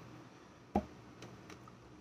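Quiet room tone, with one short click a little under a second in and two fainter ticks shortly after.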